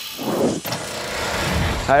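Intro sound effects for an animated logo: a whoosh about a third of a second in over a fading hiss, with a low swell near the end.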